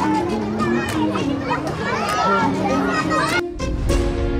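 Children and young people shouting and calling out while playing, over background music. About three and a half seconds in, the voices cut off abruptly and the music carries on alone.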